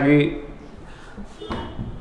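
A man's voice finishes a word at the start, then a pause with room noise and a faint low rumble about one and a half seconds in.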